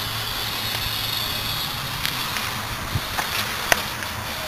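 Steady low hum under even outdoor background noise, with a few light clicks and knocks in the second half.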